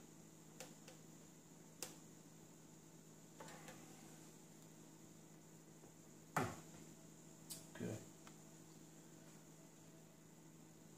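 Faint handling sounds over a steady low hum: a few light clicks, then a sharp knock about six and a half seconds in and a duller knock a second later, as the telescope and a swing-arm magnifier lamp are handled and moved.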